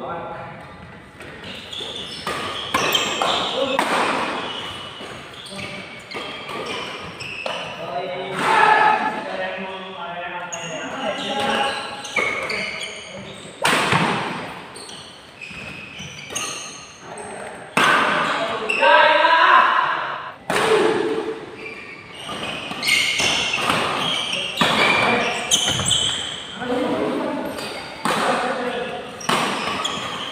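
Badminton play in a large echoing hall: rackets striking the shuttlecock with sharp, irregular smacks over several rallies, with people's voices heard throughout.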